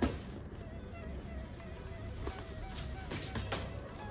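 Quiet background music with a wavering held melody line, with a few short rustles and clicks from a cotton dress and its packaging being handled and unfolded.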